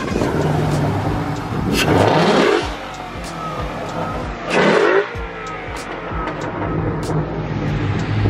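Ford Mustang GT's 5.0 V8 idling with a steady low note, revved hard twice, about two seconds in and again near five seconds. Each rev rises quickly and drops back to idle.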